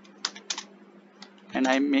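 Computer keyboard being typed on: a few quick keystrokes in the first half second or so.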